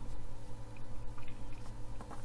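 Room tone with a steady low electrical hum and faint background hiss; no distinct sound event.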